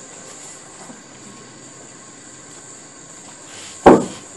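Steady low hiss of room noise with a faint high-pitched whine, broken near the end by one loud, short knock that dies away quickly.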